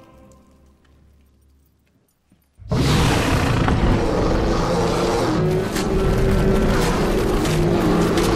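Score music fades into near silence. About two and a half seconds in, a giant sea monster's roar (the Kraken, a film sound effect) starts suddenly and very loud, a dense rushing blast with a low growling pitch underneath, and keeps going.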